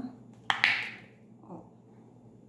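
A sharp plastic click about half a second in, followed by a brief rustle, as a small clear plastic jar of gel cleanser and its lid are handled.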